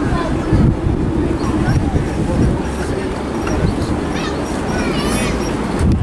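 Strong wind buffeting the microphone in a heavy, uneven low rumble, with faint voices in the background.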